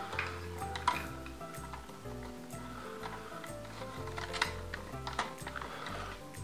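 Background music with held notes over a stepped bass line. A few faint clicks from wires and a small screwdriver at a plastic terminal block come about a second in and again in the second half.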